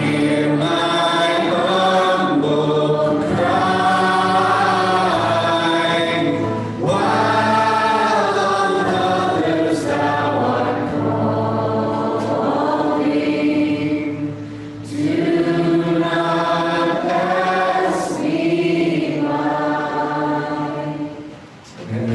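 Congregation singing a hymn together, led by a man on an acoustic guitar, in long phrases with short breaks between them; the song ends shortly before the end.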